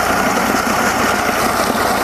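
Mercury 60 hp three-cylinder two-stroke outboard idling steadily in forward gear at about 600 RPM, a little below its 650–750 RPM idle spec, with its spark plugs fouled by storage oil.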